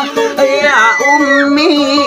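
A man singing a dayunday folk song over an acoustic guitar he plays himself; his voice slides and wavers in pitch about halfway through while the guitar notes hold steady beneath.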